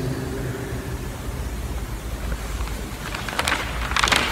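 Steady low rumble with a light hiss of background room noise, and a few faint clicks near the end.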